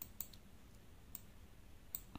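A few faint, sharp clicks: a quick cluster at the start, one about a second in and another near the end.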